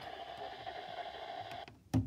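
Midland WR120EZ weather alert radio's speaker putting out steady static with a held hum-like tone, which cuts off suddenly after about a second and a half. A single sharp button click follows near the end.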